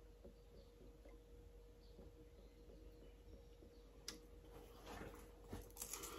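Near silence: room tone with a faint steady hum, and one small click about four seconds in.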